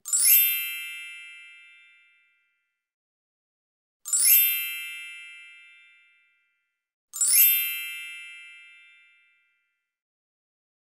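Three bright, high-pitched chime sound effects, each swelling in quickly and ringing out over a second or two, the second about four seconds after the first and the third about three seconds after that.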